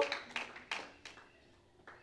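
The tail of a man's voice fades out, then two faint sharp taps come about a third of a second apart, with a fainter one near the end.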